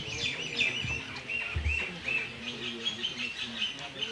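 Small birds chirping over and over, with a low thump about one and a half seconds in.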